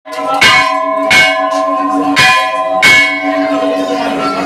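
Temple bell struck four times at an uneven pace, each stroke ringing on, over a steady lower ringing tone.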